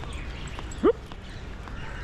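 A single short, sharply rising "whoop" from a person's voice, about a second in, over low, steady outdoor background noise.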